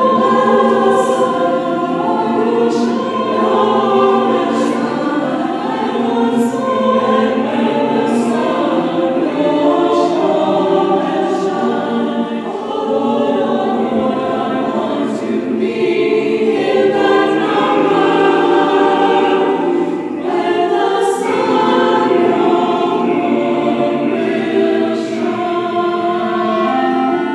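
Mixed church choir singing in parts with orchestral accompaniment, held sung notes moving every second or so.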